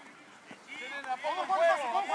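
Men's voices talking and calling out, starting under a second in after a brief lull in faint outdoor background noise.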